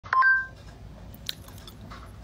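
A brief electronic beep of two steady tones near the start, then faint clicks.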